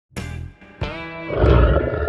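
Intro logo jingle: two sharp musical chord hits, one at the very start and one a little under a second in, then a lion-roar sound effect over the music in the second half, the loudest part.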